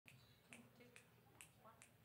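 Faint finger snaps, five evenly spaced at a little over two a second, counting off the tempo before a jazz band comes in.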